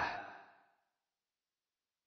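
The tail of a man's reading voice fades away in the first half second, then dead silence: a pause in the recitation.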